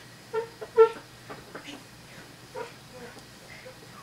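Short, high-pitched wordless vocal yelps from a boy, the two loudest close together about half a second in, followed by a few fainter ones.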